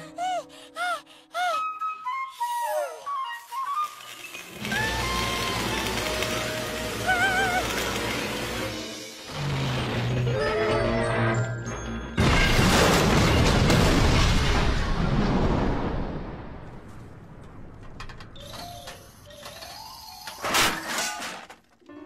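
Cartoon music score with sound effects. About twelve seconds in comes a long, loud crash of collapsing metal wreckage that lasts several seconds, followed by a few further impacts near the end.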